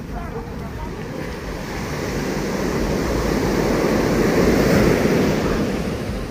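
Surf washing onto a sandy beach: a steady rush that swells to its loudest about three-quarters of the way through and then eases off, with wind buffeting the microphone.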